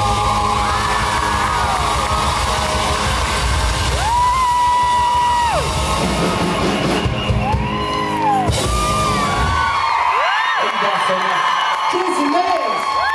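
Live rock band with drums, guitars and vocals playing the end of a song, with long held notes. About ten seconds in the band stops and the audience whoops and cheers.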